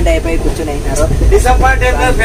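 Several men's voices talking over the steady low rumble of a passenger train coach in motion.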